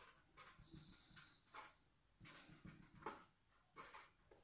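Pen writing on paper: a series of short, faint strokes as letters are written out.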